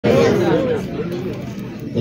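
Speech: a person talking, with some crowd chatter.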